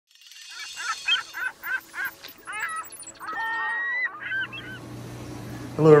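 A run of short honking calls at about five a second, then longer calls that bend in pitch and one held note, with a faint high shimmer above them. From about four seconds in, a steady low hum from the aquarium system's pumps takes over.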